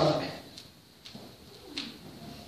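A man's voice trailing off in a drawn-out hesitation 'uh', then a pause of faint room sound with a few soft clicks.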